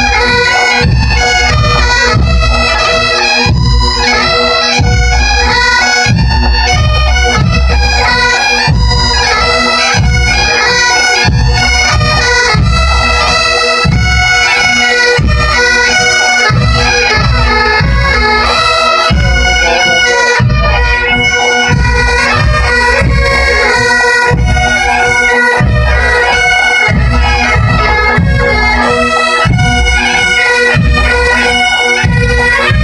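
Massed pipe bands playing bagpipes in unison: a steady drone under the chanter melody, with a regular low drumbeat beneath, loud throughout.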